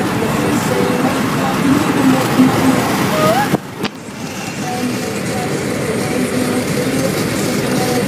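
Steady road noise inside a moving car with indistinct voices over it, dropping out suddenly for about half a second midway.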